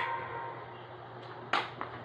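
A pop song stops right at the start, leaving a quiet room with a low steady hum and a brief sharp click about one and a half seconds in, with fainter clicks just before and after it.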